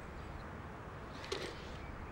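Quiet, steady outdoor background ambience, with one brief faint sound about a second and a half in.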